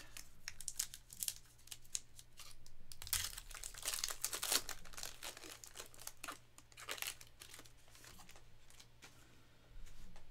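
Foil wrapper of a 2024 Panini Luminance Football trading-card pack being torn open and crinkled by hand: a dense run of crackling, loudest a few seconds in, then quieter near the end as the cards come out.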